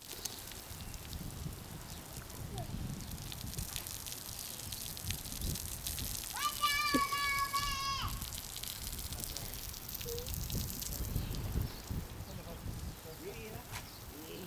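Pop-up lawn sprinkler spraying a jet of water, a steady hiss. A child's long, held shout comes about six seconds in.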